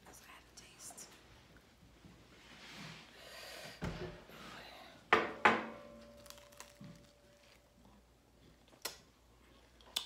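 Tableware clinking at a table: a dull knock, then two sharp clinks about five seconds in, the second leaving a short ringing tone, and a small click near the end.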